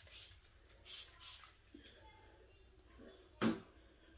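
Trigger spray bottle misting water onto a curly wig: three quick sprays, one at the start and two more about a second in.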